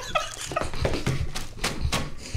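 A man laughing through a full mouth of lettuce, in short choked breaths, among sharp crunching and crackling of crisp iceberg lettuce leaves being chewed and torn.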